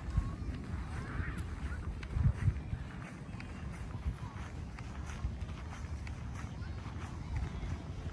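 Wind buffeting a handheld phone microphone as an uneven low rumble, strongest about two seconds in, with a few faint, high, curving calls in the distance.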